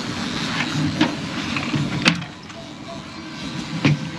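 Twin outboard motors running slowly, with water washing past the hull. Two sharp knocks stand out, one about two seconds in and one near the end, and the noise drops a little after the first.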